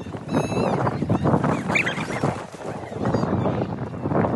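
Short, high-pitched shouts and squeals from people sledding, over a continuous rough rushing noise.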